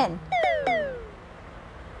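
The last of a spoken word, then two short high vocal cries about half a second apart, each sliding steeply down in pitch.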